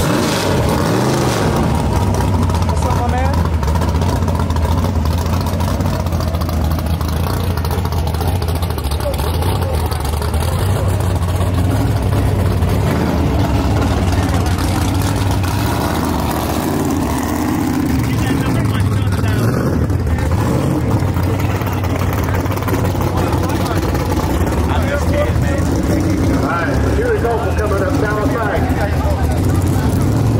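Drag race car's engine idling loudly and steadily through open exhaust headers, just after being started.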